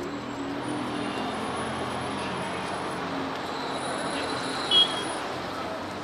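Street ambience: a steady wash of road traffic noise, with one brief, sharp, high-pitched sound a little before the end.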